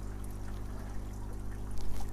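Water trickling and running in an aquaponics fish tank, steady and fairly quiet, with a constant low hum underneath.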